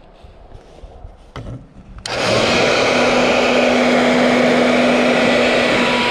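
Handheld hair dryer switched on about two seconds in, then running steadily: a loud rush of air with a steady low hum. It is blowing on a truck door lock that has frozen solid in minus-30 cold, to thaw it.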